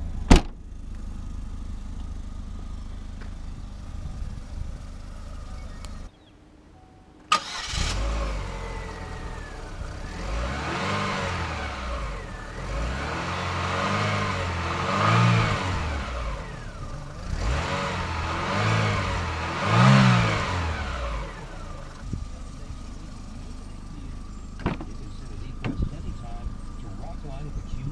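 A 2008 Chevrolet Aveo5's 1.6-litre four-cylinder engine is heard, with a loud thump near the start as the hatch is shut. The engine goes quiet for about a second, a sharp click follows, and the engine runs again. It is then revved about half a dozen times, each rev rising and falling in pitch, before settling back to a steady idle.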